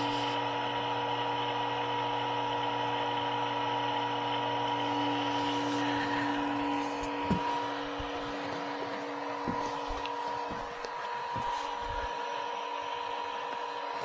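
Chugger brewing pump running steadily, whirlpooling water in a stainless steel brew pot: a constant hum of several steady tones over the rush of the swirling water. The pump's vibration is carried into the half-full pot, which acts a little like a bell. A few faint knocks come in the second half.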